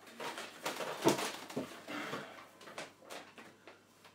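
Rustling and crinkling of a plastic bag of play sand being handled, with irregular clicks and a sharp knock about a second in as a plastic funnel and bottle are handled.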